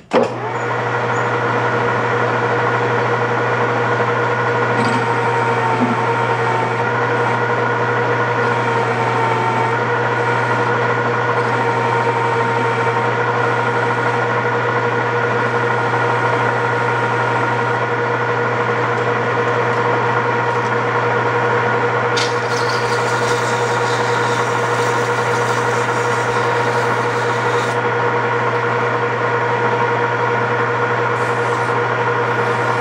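A 13x40 metal lathe switched on and running steadily, a constant hum of motor and gearing with several steady whining tones. A brighter hiss joins for several seconds in the latter part as the cutting tool bevels the inside edge of a bushing sleeve.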